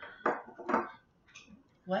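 White ceramic teacup set down with a few short china clinks, followed by a single spoken "what" near the end.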